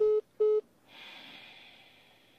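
Two short, level electronic beeps from a phone, the call-ended tone as the other party hangs up, followed by a soft breathy exhale lasting about a second.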